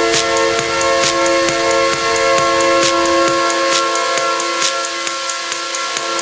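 Techno played from vinyl in a DJ mix: a held, horn-like chord over a fast hi-hat and cymbal pattern. The bass drops out about three and a half seconds in, leaving the chord and hi-hats.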